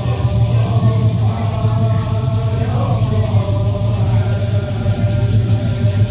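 A chorus of voices chanting in unison, holding long pitched notes without a break, typical of a Hopi dance song.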